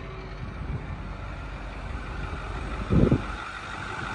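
2009 Ford F-550's 6.4-litre Power Stroke V8 diesel idling steadily and sounding healthy, with one loud thump about three seconds in.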